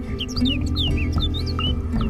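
A bird chirping in a quick run of a dozen or so short, high, sweeping notes, over steady instrumental background music.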